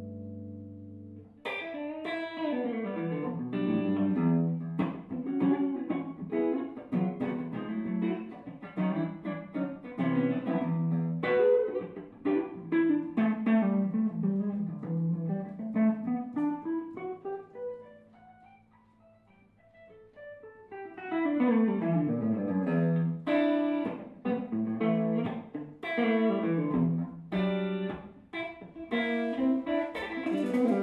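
Semi-hollow electric jazz guitar playing a solo passage: a held chord dies away, then fast single-note runs sweep down and back up in pitch. The playing thins to almost nothing for a couple of seconds past the middle before the runs pick up again.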